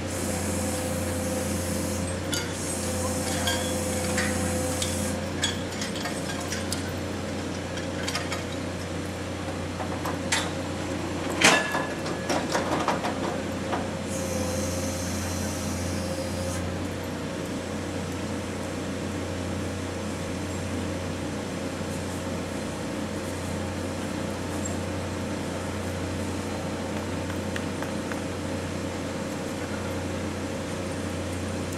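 Railway track maintenance vehicle working at night: its engine gives a steady low drone throughout. Hissing bursts come in the first few seconds and again about a quarter of the way in, and a cluster of sharp metallic clanks falls around a third of the way through, the loudest near the middle of that cluster.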